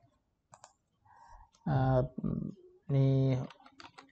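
A few light computer keyboard keystrokes, with a voice speaking in two short stretches in the middle.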